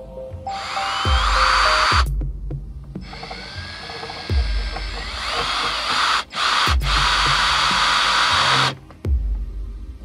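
Cordless drill driving screws into plywood in three runs of one to three seconds each, its motor whine rising as it spins up. Background music with a steady bass beat plays throughout.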